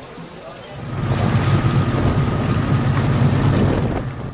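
Twin Yamaha 225 four-stroke outboards running with the boat underway, a steady low hum under wind on the microphone and water noise, which gets much louder about a second in.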